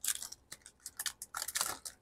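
Foil trading-card pack wrapper crinkling as the cards are slid out of it by hand, a quick run of short crackles that gets busier in the second half.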